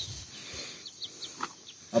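Small birds chirping: a few short, high, falling chirps in quick succession from about a second in, over a steady high insect buzz.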